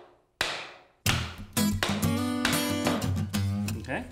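A hammer strikes a tapping block once, knocking a laminate plank's end joint closed, and the sharp knock rings off briefly. About a second in, acoustic guitar background music begins and carries on as the loudest sound.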